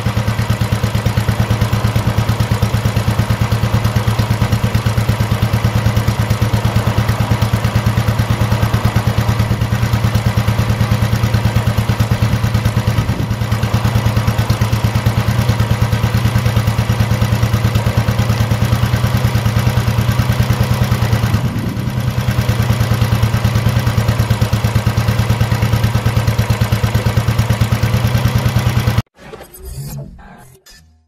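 Royal Enfield Bullet's single-cylinder four-stroke engine idling with a steady, even beat, the note briefly dipping and lifting a little past two-thirds of the way in. It cuts off suddenly about a second before the end.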